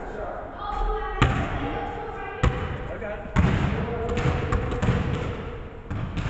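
Basketball hitting the hardwood floor of a large gym, echoing. There are sharp thuds about a second in, near two and a half seconds and just after three seconds, then more bouncing.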